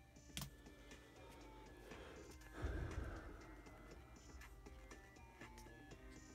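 Trading cards being shuffled and flipped through by hand, with light ticks and clicks of card edges and a louder soft rustling swell about two and a half seconds in. Faint background music runs underneath.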